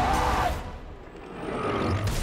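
Action-film soundtrack: a man's yell over score and battle effects, dipping quieter in the middle before a low rumble builds near the end.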